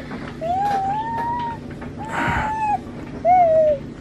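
A six-month-old baby vocalizing: three drawn-out high calls, each rising then falling in pitch, with a short breathy burst during the middle one.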